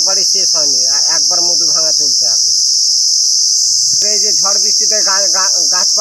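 Loud, steady, high-pitched insect chorus droning without a break. A man's voice runs under it, with a pause of about a second and a half in the middle.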